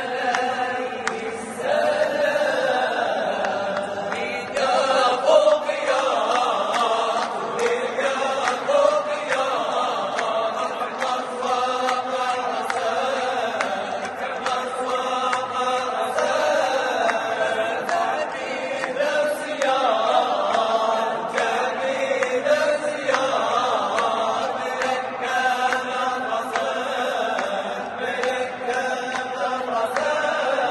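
A Moroccan men's vocal group singing a chant together without instruments, the voices ringing in a church's reverberant space.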